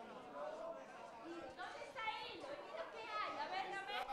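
Speech and chatter of several voices in a room, with a higher-pitched voice standing out in the second half.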